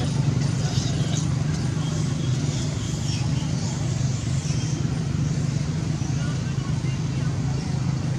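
A steady low mechanical hum throughout, with indistinct voices in the background.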